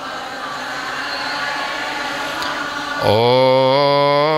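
Many voices of a congregation chanting a Vishnu name-mantra together, blurred into a loose murmur, in the pause after the leader's call. About three seconds in, a single male voice on the microphone begins the next name with a long sung 'Om'.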